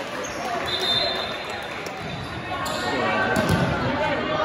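A volleyball is bounced a few times on a hardwood gym floor, giving sharp, echoing thuds in the second half, as a server readies to serve. Spectators and players are talking throughout in the reverberant gym.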